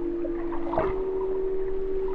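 Ambient sound-art music: a held drone tone that steps up slightly in pitch a little under a second in, over a hydrophone recording of underwater river sound with scattered small ticks and pops and a brief crackling burst at the pitch change.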